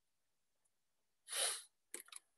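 Near silence broken, about a second and a half in, by one short burst of breath noise from a person, under half a second long, with a small click near the end.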